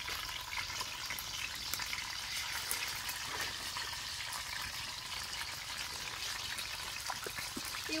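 Steady background hiss with faint scattered ticks and a low rumble underneath, with no speech.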